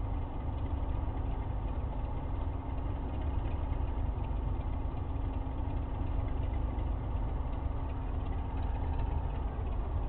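Diesel locomotive engine idling steadily, a low, even running sound with no change in pitch.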